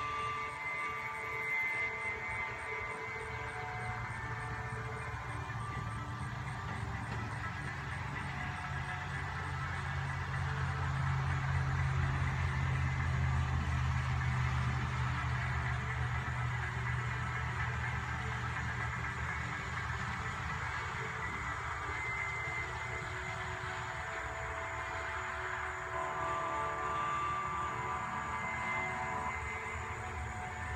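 Low rumble of a distant vehicle passing, swelling about a third of the way through and then fading, over a steady outdoor background with faint high steady tones.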